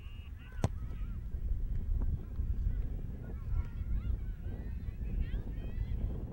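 Outdoor ambience: a steady, fluctuating low rumble with several high calls that bend up and down in pitch, and one sharp click just over half a second in.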